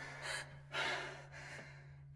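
Quiet breathy gasps and sighs from two people, a couple of short breaths in the first second and a half, over a low steady hum.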